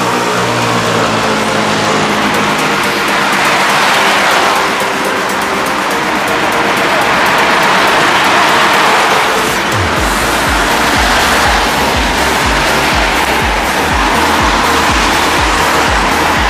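Cars passing on a wet, snowy street: the hiss of tyres on the wet road swells and fades as each one goes by. Background music plays underneath, and a steady low beat comes in about ten seconds in.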